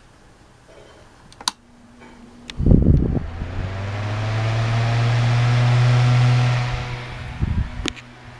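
Small electric desk fan being switched on by hand: knocks and a click at the switch, then motor hum and rushing air building as the blades come up to speed. The sound fades again about three-quarters of the way through as the fan is switched off and winds down, with more handling knocks and clicks near the end.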